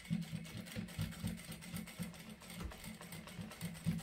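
Faint, irregular light clicks and knocks from work at a domestic sewing machine as the layered fabric of a pouch is handled and fed under the presser foot.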